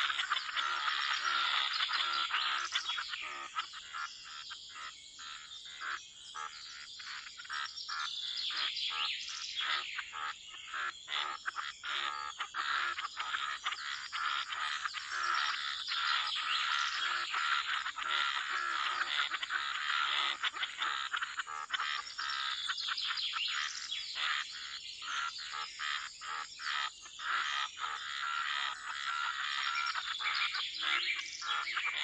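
Pond wildlife chorus: many frogs and birds calling at once in a dense layer of short, rapidly repeated calls.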